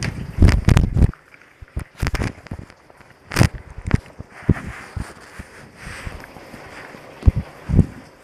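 Handling noise on a phone's microphone: irregular bumps, knocks and rustles as it is held and moved. The heaviest thumps come in the first second, and there is a sharp click a few seconds in.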